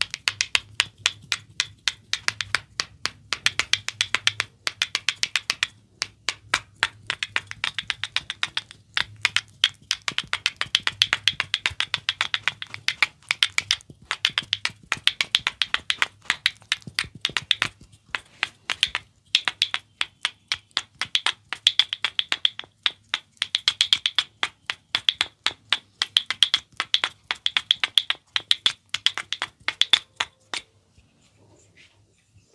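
Rapid wooden clicking as two red wooden massage sticks are knocked together against an oiled ear. The clicks come in quick runs, several a second, broken by brief pauses.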